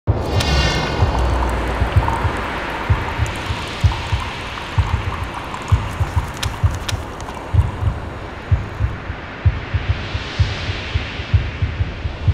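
Dark cinematic intro music for a production logo: a swelling, hissing wash over repeated low thumps.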